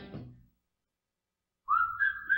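A commercial's music fades out into a second of dead silence. Then, near the end, a person starts whistling a tune: one clear held note that slides slightly upward.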